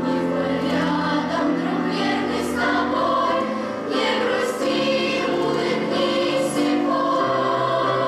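Children's choir singing in unison and harmony, holding long notes that change pitch every second or two, with short hissing consonants cutting through about every two seconds.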